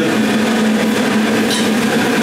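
A steady machine hum with one constant low tone and a noisy rush above it.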